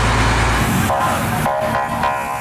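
Loud street commotion in amateur footage: a rough noise with a deep rumble, which gives way about a second in to a steady high-pitched tone.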